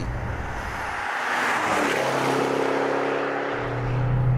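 A Maserati Quattroporte driving past at speed: a rush of tyre and engine noise builds and peaks about a second and a half in, then gives way to a steady engine hum as the car moves off.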